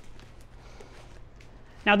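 Faint rubbing and a few light taps from hands pressing and smoothing packing tape down onto a cardboard box, then a man's voice near the end.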